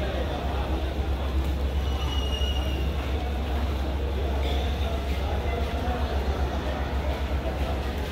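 Steady low hum of the waiting Pakistan Railways passenger train's diesel running at idle, with a brief high whine about two seconds in.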